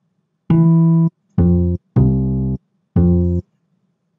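Microsoft GS Wavetable Synth sounding the General MIDI acoustic bass patch: four separate low notes played one after another from a virtual MIDI keyboard, each cut off abruptly when the key is released.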